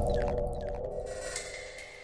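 Logo intro sound effect: the ringing tail of a deep impact with a held tone and a few faint shimmering sweeps, fading out gradually.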